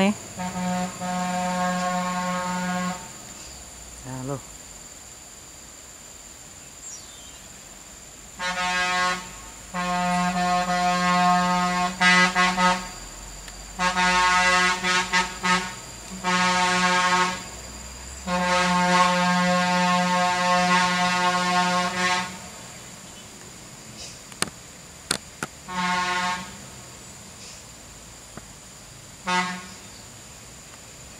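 A heavy vehicle's air horn blown in a series of long, steady blasts at a single pitch, the longest about four seconds, followed by two short toots near the end.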